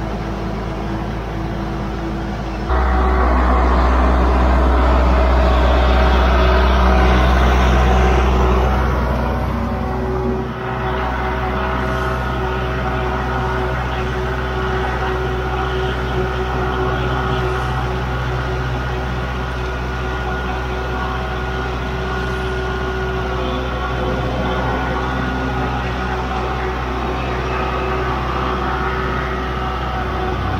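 Kubota tractor's diesel engine running steadily. It is throttled up sharply about three seconds in and eases back down around nine to ten seconds.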